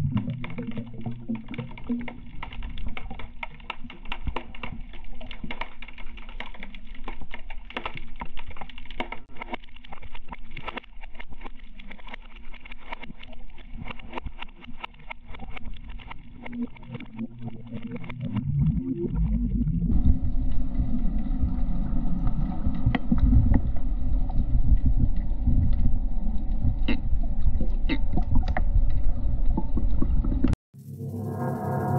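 Underwater sound picked up by a diver's camera: a dense crackle of sharp clicks over low water noise, which gives way about two-thirds of the way through to a louder, steady low rumble.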